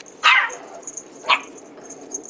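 A small long-haired dog barking twice, about a second apart, the first bark a little longer than the second.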